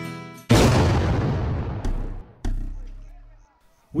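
Guitar music fades out, then a loud booming impact hits about half a second in and dies away over about two seconds, followed by a deeper, quieter thump about two and a half seconds in that fades to silence.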